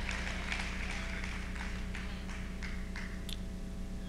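Quiet hall room tone: a low steady hum with a faint hiss and a few faint, scattered taps.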